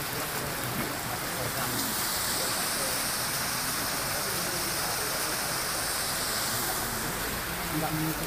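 Steady rushing hiss of flowing water from a shallow stream and a small waterfall, with indistinct crowd voices under it.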